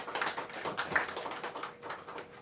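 Applause from a small audience: many hands clapping irregularly, thinning out near the end.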